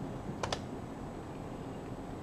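A pair of quick clicks close together about half a second in, from someone working a computer, over a steady low room hiss.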